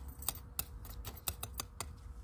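A small metal spoon clicking and scraping in gritty potting mix against a small ceramic pot, firming the soil around a freshly repotted succulent: about ten light, irregular clicks.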